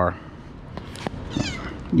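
A domestic cat meows once, a short call that falls in pitch, about one and a half seconds in. A sharp click comes just before it.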